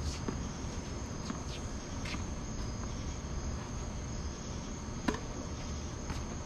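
A steady high chirring of crickets, with a handful of short, sharp tennis ball hits and bounces; the loudest comes about five seconds in.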